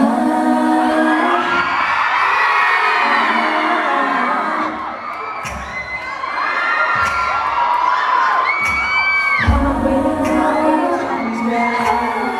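Concert crowd of fans screaming and cheering, with many high, wavering shrieks. A female pop vocal group singing over a backing track is heard briefly at the start and comes back in strongly about two-thirds of the way through.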